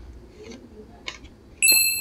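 A short, bright ding sound effect comes in suddenly about a second and a half in and rings on. It marks a card's price appearing on screen.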